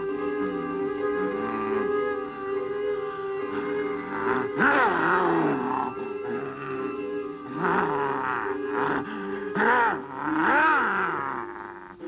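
Horror film score: a sustained low note held throughout, with loud sliding tones that swoop up and fall back several times in the second half.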